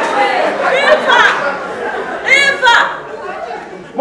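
Speech only: several actors' voices talking over one another, fading near the end.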